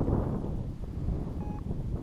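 Wind buffeting the camera microphone in uneven gusts, a low rumbling noise. A faint short beep sounds about one and a half seconds in.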